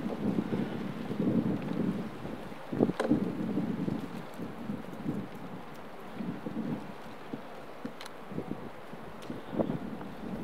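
Wind buffeting an outdoor microphone in irregular gusts, with a few faint clicks.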